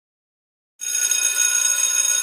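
Silence, then a bit under a second in an electric school bell sound effect starts ringing: a steady, high-pitched continuous ring.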